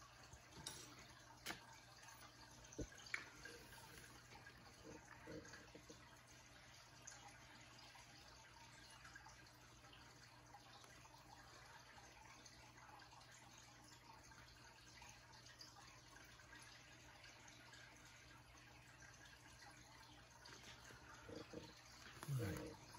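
Near silence: faint room tone with a low steady hum and a few soft clicks in the first few seconds.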